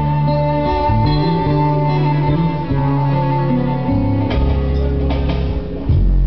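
Live band playing an instrumental passage: an acoustic guitar strummed over held low notes that change about once a second, with sharper strums near the end.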